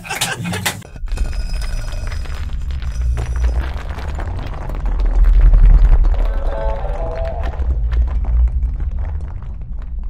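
A short laugh, then a cinematic logo sting made of a deep booming bass rumble with faint metallic ringing on top, swelling to its loudest about halfway through.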